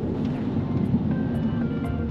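Road and engine noise inside a moving police car's cabin, a steady low rumble. Background music fades in over it in the second half.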